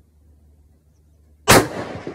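A single shot from a lightweight Weatherby hunting rifle in .280 fitted with a muzzle brake: one sharp, very loud crack about one and a half seconds in, ringing out under the metal roof of the shooting shed.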